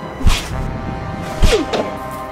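Two hard slaps to the face, each a sharp smack with a low thud, about a second apart, over background music.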